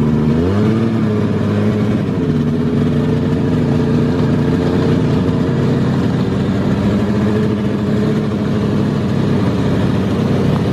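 Aktiv Panther snowmobile engine revving up about half a second in, then running steadily at speed, heard from on board.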